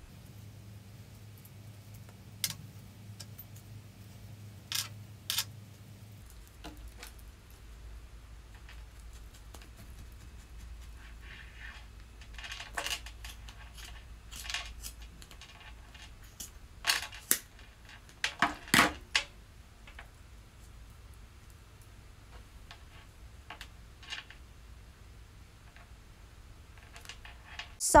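Small clicks and snips of a plastic pom-pom maker and scissors being handled while wool is wound and cut. There are a few single clicks in the first seconds, then clusters of snips and clicks from about a third of the way in, the sharpest click about two-thirds through.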